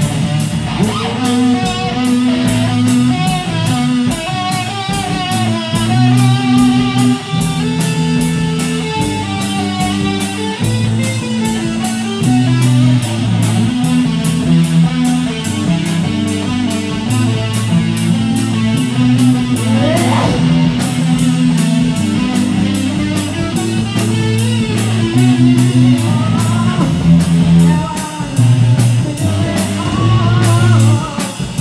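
A rock band playing an instrumental passage with no vocals: electric guitar over bass guitar and a drum kit keeping a steady beat. About two-thirds of the way through, a note slides upward in pitch.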